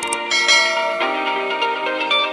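Background music with a click just after the start, followed by a bright bell chime that rings out and fades over about half a second. This is the notification-bell sound effect of a subscribe-button animation.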